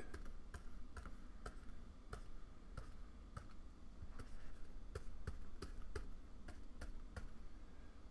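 Light, irregular clicks and taps, about two or three a second, from a pen display's stylus and the computer controls being worked while painting.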